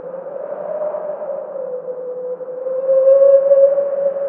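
Ambient drone: a single sustained tone that wavers slightly in pitch over a soft hiss, growing louder about three seconds in.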